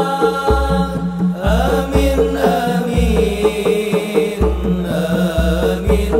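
Sholawat: a group singing devotional chant in chorus over hand-played rebana frame drums, with deep drum strokes running under the voices.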